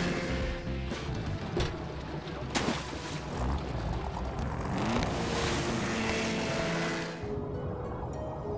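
Cartoon soundtrack music mixed with water splashing and a motorboat engine, with a sharp hit about two and a half seconds in. Near the end the water and engine noise drops away, leaving the music.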